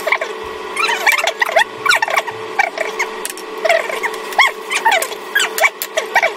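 Many short, high-pitched squeaking chirps, several a second, each gliding up and down in pitch, over a steady low hum.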